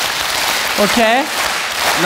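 A large theatre audience clapping their hands together, a dense, even patter of many hands.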